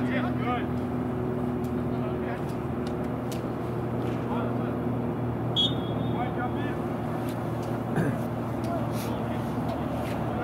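Soccer-field ambience: faint, distant shouts from players over a steady low hum. About halfway through comes one short, high referee's whistle blast, and a sharp knock follows a couple of seconds later.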